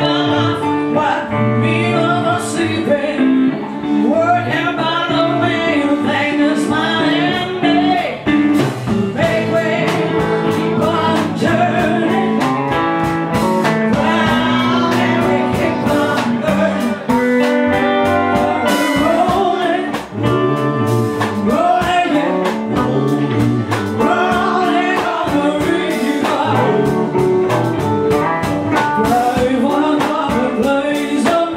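A woman singing live into a microphone with a band backing her on electric guitar and drums.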